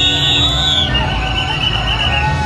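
Suona (Chinese shawm) of a procession music troupe playing a held, piercing high note that drops to a lower held note about a second in, over steady crowd noise.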